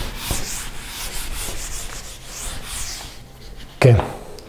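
Whiteboard eraser wiping a marker drawing off a whiteboard in repeated back-and-forth strokes, a hissing rub that stops shortly before the end.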